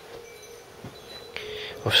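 A pause in a man's talk: quiet room tone with a faint steady hum, then a short soft hiss, and his voice starts at the very end.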